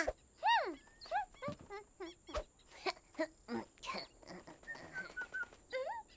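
Wordless cartoon hippo voices: short pitched grunts and hums that bend up and down, among quick clicks and taps.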